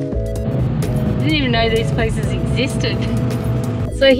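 Background music with long held notes, a voice heard briefly over it, and a steady low rumble underneath.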